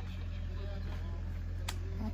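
Mini excavator's diesel engine running steadily, a low even rumble, with faint voices in the background and a single click near the end.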